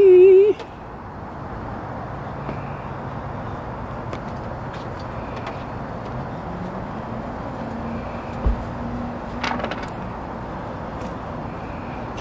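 A short, loud wavering yell from a man at the very start, then a steady low background rumble with faint scattered clicks and a brief dull thump about eight and a half seconds in.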